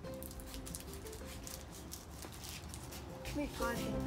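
Scissors snipping and crinkling through plastic mailer packaging: a scatter of short crisp cuts and rustles, over soft background music.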